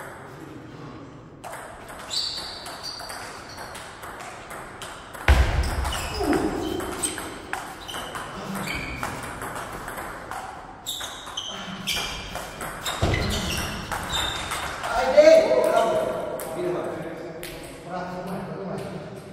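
Table tennis ball clicking sharply off the paddles and the table in an irregular series of rallies, with a couple of heavy thuds.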